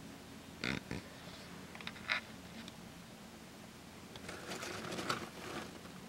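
Quiet handling sounds from a box packed with newspaper: two short soft noises about a second and two seconds in, then a run of light crinkles near the end as the snake is moved on the paper.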